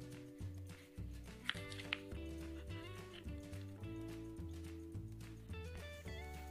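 Background music: a bass line moving under held notes, with a few sharp clicks about one and a half and two seconds in.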